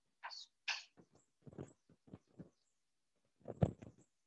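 Chalk on a blackboard: two quick scratchy strokes within the first second, writing an equals sign, then a few faint taps and a short, louder noise near the end.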